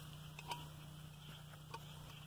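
Faint, sparse clicks from handling the metal top half of a SATURO infiltrometer chamber and unwinding its cords, a couple of them about half a second in and near the end, over a low steady hum.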